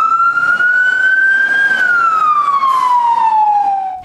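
Fire truck siren sounding one long wail: the pitch climbs for about the first two seconds, then falls slowly.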